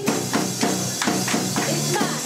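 Live indie rock band playing an instrumental passage between vocal lines: electric and acoustic guitars over drums, with bright high percussion hits keeping a steady beat of about three strikes a second.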